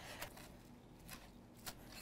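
Faint taps of a chef's knife chopping chives on a wooden cutting board. Two taps stand out, about a second and a half apart.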